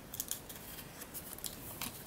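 A small stack of die-cut stickers being shuffled through by hand: faint, crisp paper rustling with small scattered clicks.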